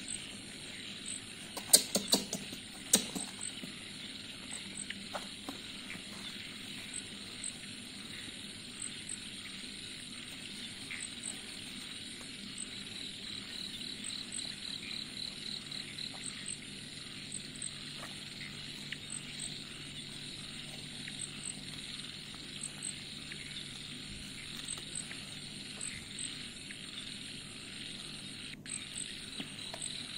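Disposable diaper being handled: a burst of sharp crinkles and clicks about two to three seconds in, then light rustling. Under it runs a steady background of insects, a faint high chirp repeating about once a second and a faster trill partway through.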